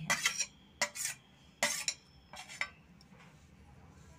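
Steel kitchen utensils clinking: a string of short, sharp metallic clinks and taps over the first three seconds while chopped green chillies are tipped into a pressure cooker of greens.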